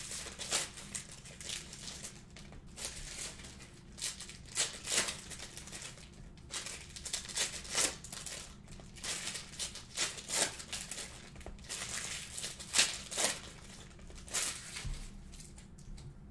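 Trading card pack wrappers crinkling and tearing open, with cards handled and shuffled: a soft run of short, irregular rustles and crackles.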